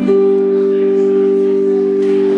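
Electric guitar chord struck once at the start and left ringing steadily.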